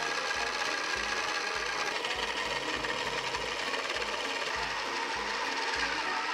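Small electric motors of toy pottery wheels running with a steady whir while the wheel heads turn under hand-shaped clay.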